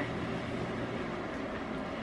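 Steady background hiss of room tone, even throughout, with no distinct events.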